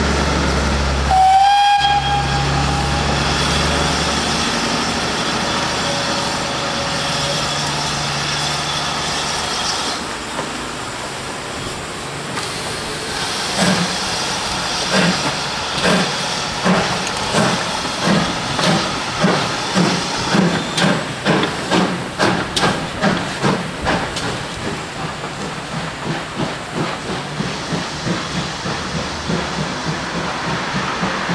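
A steam locomotive's whistle gives one short blast about a second in, followed by the steady hiss and running of a steam-hauled passenger train going past. From about halfway through, an even rhythmic beat of about two a second swells as the train passes and then eases.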